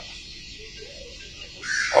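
A faint bird call about a second in, over low outdoor background noise, in a pause between stretches of a man's speech.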